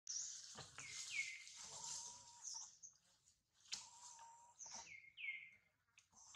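Outdoor bird calls: repeated high chirps, with two calls sliding downward in pitch, one about a second in and one near the end, and a couple of brief steady whistled notes between them.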